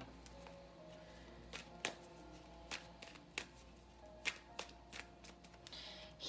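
Tarot cards being handled and shuffled by hand, a string of sharp, irregular snaps and taps as the deck is cut and riffled. Soft, slow background music plays underneath.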